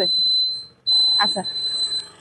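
Electronic buzzer sounding a steady high-pitched beep, repeating in long beeps with short gaps.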